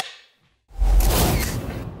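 A clapperboard snap sound effect, one sharp clap that fades quickly, followed about 0.7 s later by a loud whoosh with a deep boom underneath, a transition effect leading into a logo.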